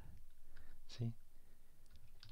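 Faint clicks of a computer keyboard as the Enter key is pressed to open new lines in the editor, with one short spoken word about a second in.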